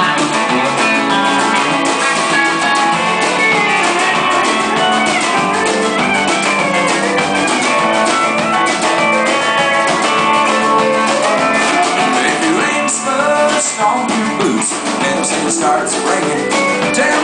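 Live country band playing: electric guitars, a steel guitar and a drum kit.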